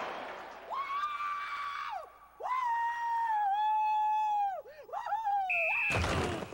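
A person letting out long, high-pitched screams as crowd noise fades out: a held cry, a longer one that wavers and dips, then a short rising one near the end. A brief steady high tone sounds just before the end.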